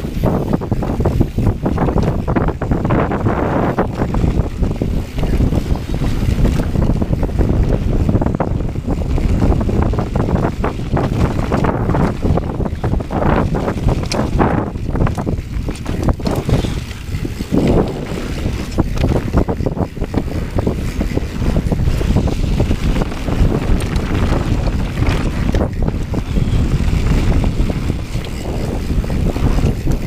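Wind buffeting the microphone of an action camera on a mountain bike descending a dirt trail fast, over a continuous rumble of knobby tyres on dirt and frequent small knocks and rattles from the bike over bumps.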